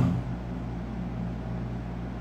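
A steady low hum with a faint hiss in the room's background, unchanging throughout.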